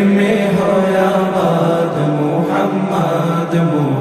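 Bangla Islamic gojol sung by male voices, with a backing chorus repeating "Muhammad" in a steady chant.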